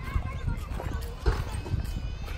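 Footsteps on loose wood-chip mulch, a few uneven steps, over a low rumble of wind on the microphone.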